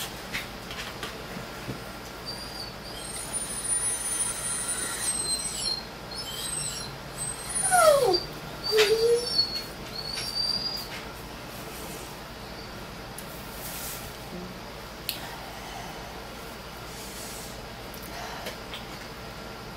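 A dog whining in thin, high-pitched whimpers, with one longer whine falling in pitch about eight seconds in.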